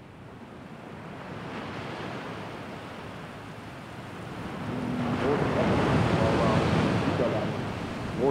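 Rushing of sea water and wind, swelling gradually to its loudest in the second half, with faint voices mixed in near the end.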